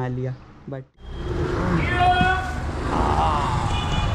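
A woman's speech cuts off about a second in, and busy street noise follows: a steady low rumble of road traffic with short bits of voices over it.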